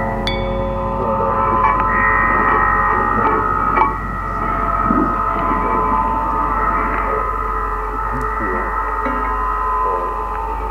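Ringing, gong-like metallic tones: a strike right at the start, then several steady high tones held and overlapping, over a constant low hum.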